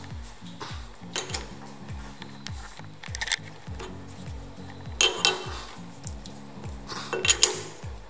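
Sharp metallic clinks and clicks from steel lathe parts as a three-jaw chuck holding a nut is turned by hand and its chuck key is fitted. The loudest clinks come about five seconds in and again near the end, over faint background music with a low repeating beat.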